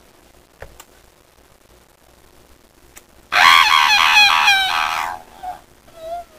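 A person screaming: a loud, shrill, wavering cry that starts a little past halfway and lasts about two seconds.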